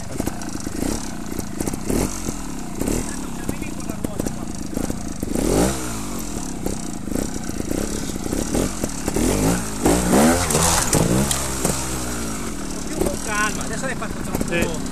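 Trials motorcycle engine running and revved hard twice, the pitch rising and falling with each throttle opening, the second rev about halfway in and longer, with scattered knocks of the bike working over an obstacle.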